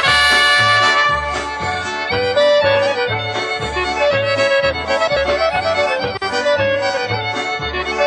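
Instrumental break of a Chicago-style polka with no singing: a squeezebox plays the melody over a steady oom-pah bass beat.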